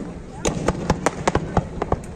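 Aerial fireworks display going off in a rapid, irregular string of sharp bangs, several a second.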